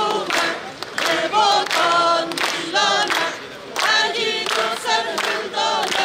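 Crowd of marchers singing together in unison, in short sung phrases with brief gaps between them.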